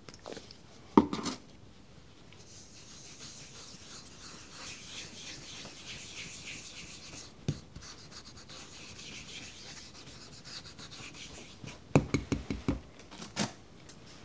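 Hand rubbing the face of a wooden printmaking block to scrub off the remains of a paper backing sheet: a steady scuffing. There is a sharp knock about a second in and a quick run of knocks near the end.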